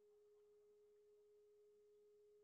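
Near silence, with only a very faint steady high hum of a single pitch.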